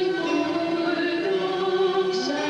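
A choir singing a slow melody in long held notes.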